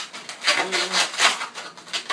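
Latex 260 twisting balloons rubbing against each other in several short scrapes as a balloon end is pushed down between the bubbles of a woven balloon hat.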